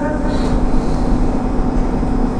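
Steady low background rumble with a constant hum, filling a pause in speech; the tail of a drawn-out spoken word ends right at the start.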